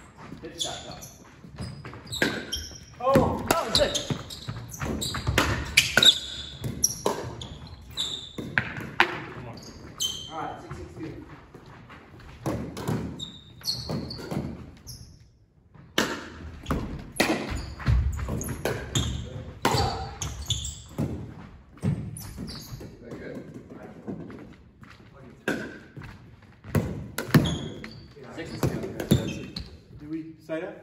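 Pickleball rally on a hardwood gym floor: sharp pops of paddles striking the plastic ball and the ball bouncing on the floor, many irregular hits with a short lull about halfway through, echoing in a large hall.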